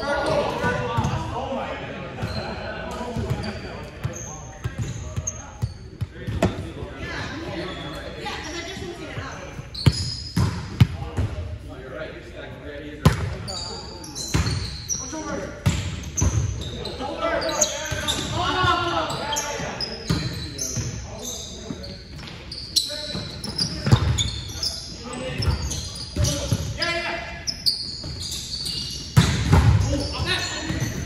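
Indoor volleyball play in a large, echoing gymnasium: the ball being struck and hitting the floor now and then, with several sharp hits, amid players calling out and chatting.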